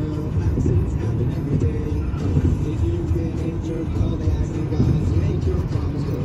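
Road and engine rumble inside a car's cabin at freeway speed, with music from the car radio playing over it.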